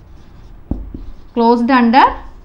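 Marker writing on a whiteboard, with two light taps of the pen on the board a little past halfway. A woman's voice starts near the end.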